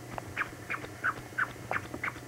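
A squeaky toy being squeezed over and over, giving a quick run of short squeaks that fall slightly in pitch, about three a second.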